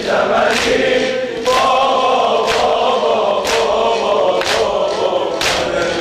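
A crowd of mourners chanting a noha refrain together in unison. A sharp slap of unison chest-beating (sineh-zani) lands about once a second, in time with the chant.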